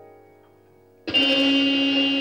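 Free-improvised keyboard music: soft piano notes die away, then about a second in a sudden loud, dense cluster of many pitches comes in and holds.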